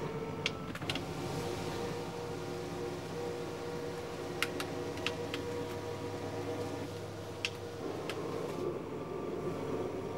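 Power nightshades in an Airstream Interstate lowering together: their small electric motors start about a second in and run as a steady hum, which changes near the end as some of the shades finish. A few light clicks are heard along the way.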